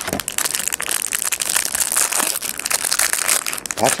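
Crumpled plastic wrapping crinkling and rustling as a trading card box is handled and opened: a dense, unbroken run of crackles.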